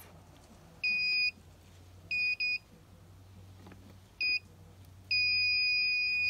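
Continuity beeper of a Klein Tools CL1000 clamp meter sounding each time a ball-bearing hood-light tilt switch is tilted closed: a steady high beep about a second in, two quick beeps, a short beep, then a long beep near the end. Each beep is the switch's contacts making, a sign that the cleaned switch works.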